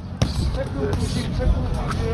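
Boxing-ring thuds from the boxers' footwork and punches, with a sharp knock about a quarter of a second in, over a steady low rumble and faint background voices.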